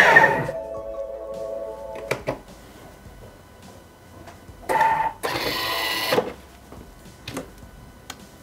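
Thermomix TM6 blade motor finishing a high-speed run grinding sugar, stopping about half a second in, followed by a short electronic chime of a few held tones. About five seconds in comes a brief, loud mechanical whir.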